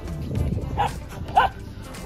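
A dog giving two short barks, the first just under a second in and the second, louder, about half a second later, over a low rumble.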